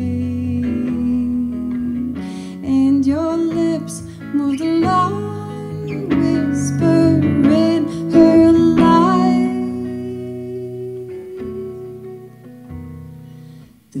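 A woman singing a slow song live, accompanied by acoustic guitar; her held notes waver in pitch. The music dies away over the last few seconds before the next line begins.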